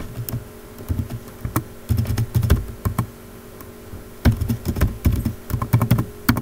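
Typing on a computer keyboard: irregular runs of key clicks with dull thumps, in short bursts with brief pauses.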